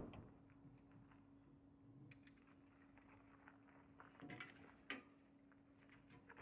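Faint clicks and knocks of a bicycle being handled and lifted onto a car roof rack, with a small cluster about two seconds in and the sharpest knocks a little past four seconds, over a low steady hum.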